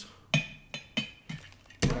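A series of about five short, sharp taps and knocks over two seconds, from hard objects being handled. The loudest come near the start and near the end.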